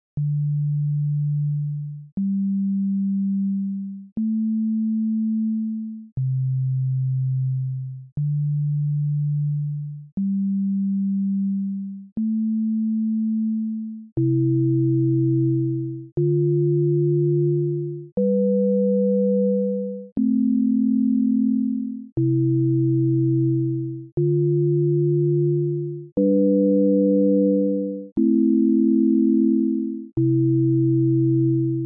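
Csound-synthesised sine-wave tones playing a looped sequence of notes, one every two seconds, each starting with a small click and fading out before the next. It begins as a single low voice; from about halfway through, a higher tone sounds with each note as further chord tones join.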